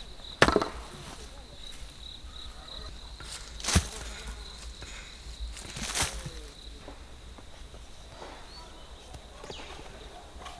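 A long-handled hoe striking into soil while digging up potatoes: three heavy blows, near the start, at about four seconds and at about six seconds. A steady high insect trill runs behind.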